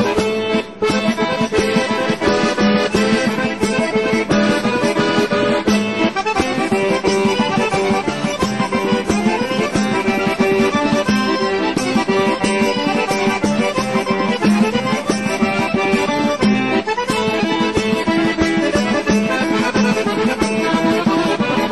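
Background music: an accordion playing a traditional folk tune, continuous, with a brief drop less than a second in.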